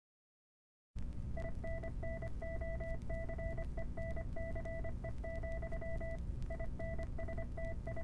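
After about a second of dead silence, a low steady rumble starts, and over it a run of electronic beeps, short and long in an uneven pattern, with a brief break near the end.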